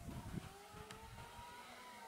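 A faint motor vehicle engine revving up and easing off again, its pitch rising then falling, after a few low thumps at the start.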